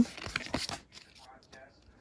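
Brief soft crinkling and scratching of a booster pack's wrapper and trading cards being handled, fading to near silence after about a second.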